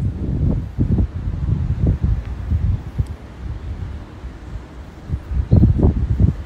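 Wind buffeting the microphone in irregular gusts, a low rumble that swells and drops and is strongest near the end.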